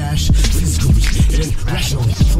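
Hip hop track: rapped vocals over a drum beat with a steady bass line.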